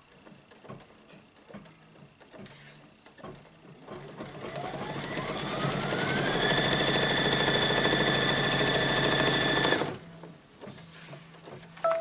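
Brother Luminaire embroidery machine starting to stitch out about four seconds in: a rising whine as it comes up to speed, then fast, steady stitching that stops suddenly.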